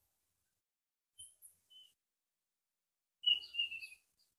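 A bird calling: two faint short chirps, then a louder call near the end that falls slightly in pitch.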